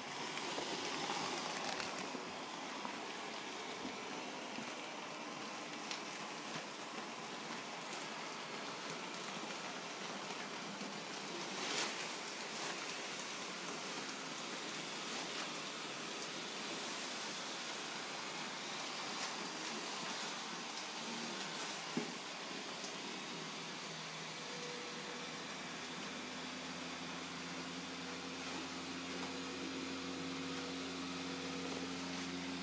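Built-in blower fan of an airblown inflatable switching on and running steadily, a constant rush of air as the figure fills. Two faint knocks come about a third and two-thirds of the way in, and a low hum joins the air noise near the end.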